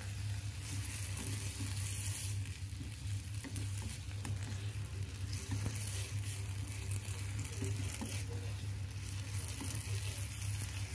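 Green beans, rice vermicelli and tofu sizzling steadily in a nonstick frying pan while a wooden spatula stirs and scrapes through them, with a few faint ticks of the spatula against the pan. A steady low hum runs underneath.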